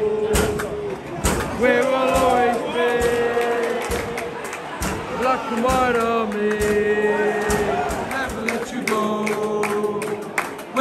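Football crowd singing a chant: many voices holding long sung notes that rise and fall, with scattered sharp knocks.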